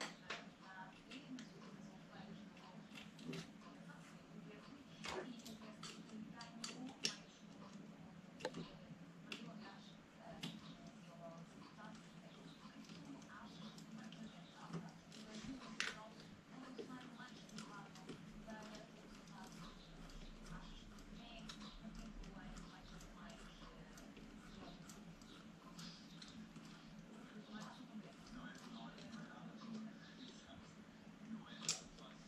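Faint, scattered clicks and ticks of a small hex screwdriver and hex screws against the metal and plastic parts of an RC truck's steering assembly as a steering link is screwed in, over a low steady hum. The sharpest click comes about 16 seconds in.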